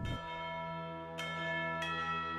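Bell tones in the series' title music: a low bell strikes at the start, then higher bell notes come in about a second in and again shortly after, each ringing on over the others.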